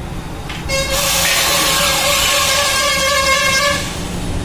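A vehicle horn sounding in one long, steady blast of about three seconds, starting less than a second in.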